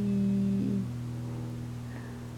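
A woman's voice holding a long, steady hum on one pitch while thinking, stepping up slightly in pitch about half a second in and held to the end, over a constant low electrical hum.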